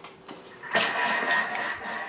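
Thermomix TM6 food processor motor running at speed 3.5, mixing a liquid batter in its bowl: a steady machine whir with a faint whine, which comes up just under a second in.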